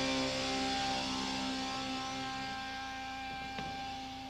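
The band's last chord, electric guitar to the fore, held and ringing out through the amplifiers, dying away slowly over a steady amplifier hum. A single click about three and a half seconds in.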